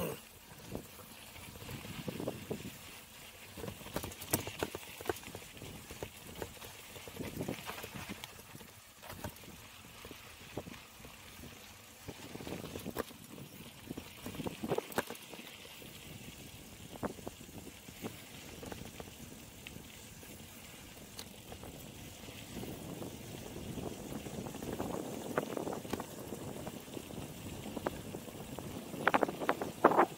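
Mountain bike rolling downhill over a rough dirt track: tyres rumbling, with irregular knocks and rattles from the bike as it hits bumps, getting louder over the last several seconds.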